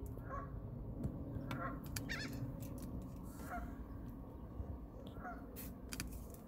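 Geese honking faintly, about five short calls spread over a few seconds, over a low steady rumble, with a few light clicks.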